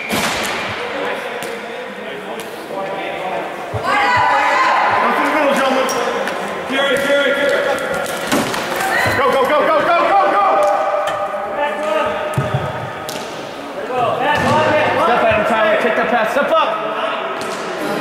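Players and bench shouting in a large, echoing indoor rink. Scattered sharp knocks and slams from broomball play run through it: brooms striking the ball, and the ball or players hitting the boards.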